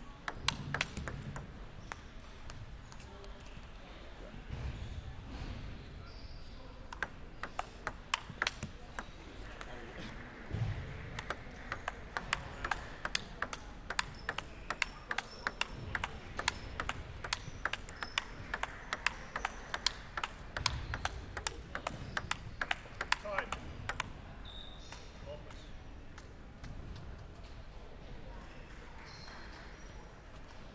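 Table tennis ball striking paddles and table in a long back-and-forth warm-up rally, with several sharp clicks a second. The rally begins in earnest about a quarter of the way in and stops several seconds before the end.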